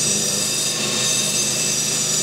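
A corded handheld power tool running steadily on a piece of metal, cleaning it up: a steady high whine over a hiss.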